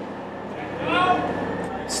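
A man's voice, brief, about a second in, over the low steady hum of a semi truck's engine.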